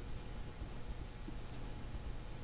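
Quiet room tone with a steady low hum, and one faint, high, warbling chirp about one and a half seconds in.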